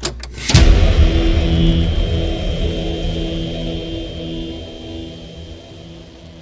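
Intro sound effect for a channel logo: a sudden hit about half a second in, then a deep, engine-like rumble with a steady hum that slowly fades away.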